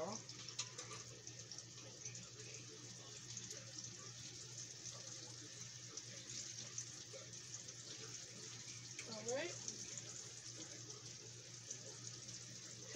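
Battered catfish and green tomatoes frying in hot oil in pans on an electric stove: a faint, steady sizzle with a low steady hum under it. A brief vocal sound about nine seconds in.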